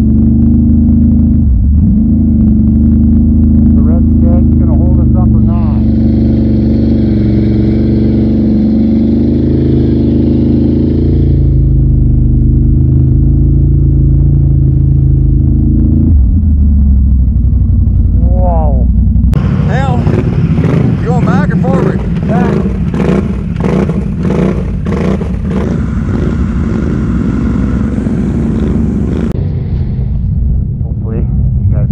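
ATV engine running hard across rough, muddy ground, its pitch rising and falling with the throttle. About two-thirds of the way in, the sound changes abruptly to another recording of ATV engines, with voices calling out over it.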